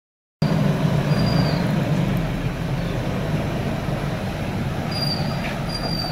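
Police SUV's engine running as it rolls slowly forward, a steady low rumble that starts suddenly about half a second in, with a few short high chirps over it.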